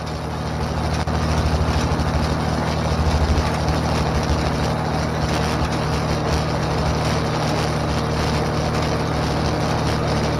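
Tractor engine running steadily under load while driving a haybob that rakes hay into windrows. The sound rises in over the first second.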